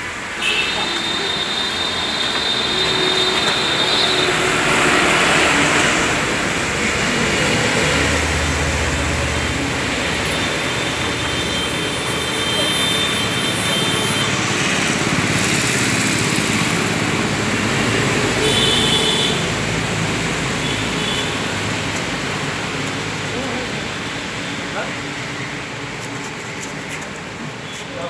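Street noise: passing traffic and men's voices, with a low engine hum about eight seconds in.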